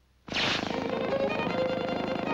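Orchestral cartoon score with strings, starting suddenly a third of a second in after a brief silence and running on in quick repeated notes.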